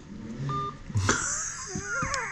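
A short single phone beep as the call ends, then a man laughing.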